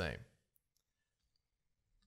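Near silence, with two or three faint computer mouse clicks a little over half a second in.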